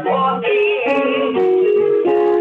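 A gospel song of praise being sung, the voice holding long notes that change pitch several times.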